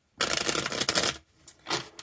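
A tarot deck riffle-shuffled by hand: one quick riffle of about a second, a dense run of rapid card flicks.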